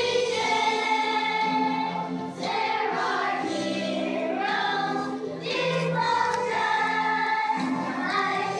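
Children's choir singing a song in long held notes, with short breaks between phrases.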